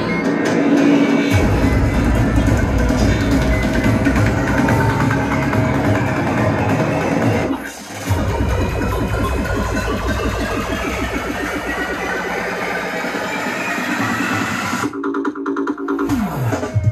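Electronic dance music, progressive psytrance, played loud through a club sound system. A heavy, driving bass line comes in about a second and a half in, there is a brief gap about halfway, and near the end the bass drops out for a build-up into the next drop.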